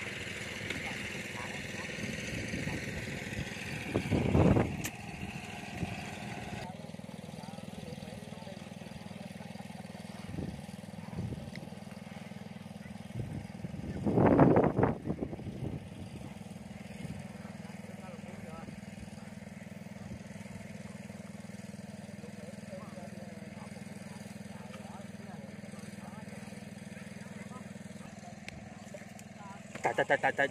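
A small engine running steadily with a low hum, with two louder, short noisy bursts about four and fourteen seconds in.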